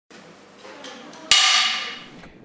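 A film clapperboard snapped shut: one sharp wooden clap about a second and a quarter in, with a ringing tail that fades away.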